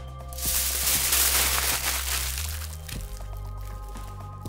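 A sheet of aluminium foil crumpled by hand into a ball: a loud crinkling rustle for about two seconds that fades out, over steady background music.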